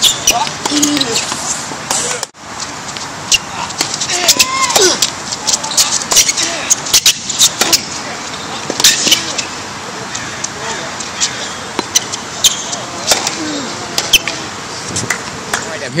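Tennis ball struck by racquets and bouncing on a hard court: many sharp, irregular knocks, with people talking in the background.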